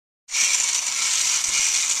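Motor and plastic gears of a battery-powered toy robot whirring as its mechanism swings the 3D-printed ear pieces up and down. It starts suddenly about a third of a second in, after silence.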